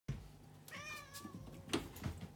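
A domestic cat gives one short meow, about half a second long, falling slightly at the end. It is followed near the end by a sharp knock, which is the loudest sound.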